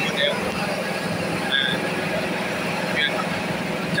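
A truck engine running steadily with a low hum, under an even rush of noise, while the truck moves along a flooded road.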